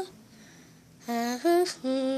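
A child humming a short tune of three held notes, starting about a second in.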